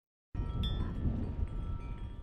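Hanging metal tubular wind chimes ringing in the wind, several steady tones held over a low rumble of wind on the microphone. The sound cuts in suddenly about a third of a second in, after a moment of silence.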